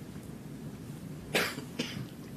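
A person coughing: one short cough about a second and a half in, followed closely by a second, briefer one, over quiet room tone.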